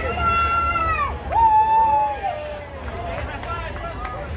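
High voices holding long notes that drop off at the end, two in the first half, over crowd chatter and a steady low hum.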